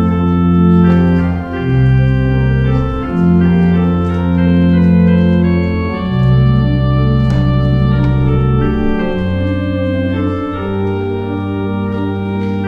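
Church organ playing slow, sustained chords, the bass note changing every two seconds or so.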